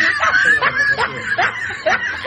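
A woman laughing, a run of short rising laughs about two or three a second.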